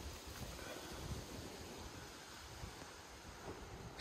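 Faint wind buffeting the microphone, with rustling apple leaves.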